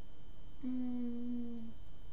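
A woman humming a single steady 'mm' note for about a second, with a mug of coffee at her lips.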